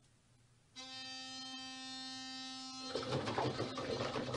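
A single steady musical note, held flat for about two seconds and starting about a second in, then a rustling noise near the end.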